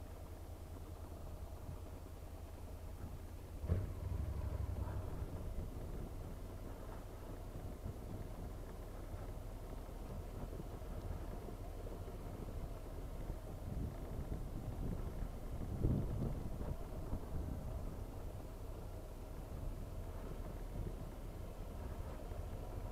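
Honda NC 750X motorcycle's parallel-twin engine running at low speed, with tyre rumble over cobblestones. There is a knock about four seconds in, and uneven swells of rumble later on.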